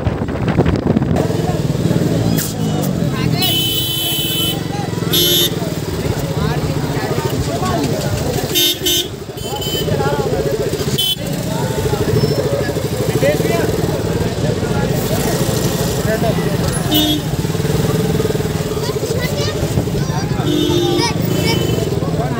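KTM RC sport bike's single-cylinder engine running at low speed in traffic, with vehicle horns honking several times: a few seconds in, again about halfway and near the end. The voices of a crowd chatter throughout.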